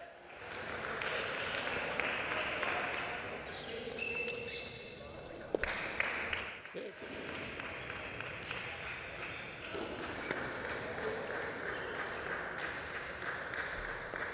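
Table tennis ball clicking off the bats and the table during rallies, over a steady hiss of hall noise, with a few sharper knocks around the middle.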